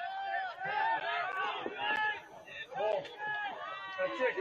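Raised voices shouting short unclear calls, one after another, across an outdoor lacrosse game.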